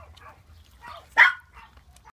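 A small dog gives one short, sharp bark about a second in.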